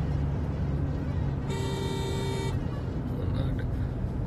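Steady low rumble of a car on the move, with a vehicle horn sounding one steady honk of about a second near the middle.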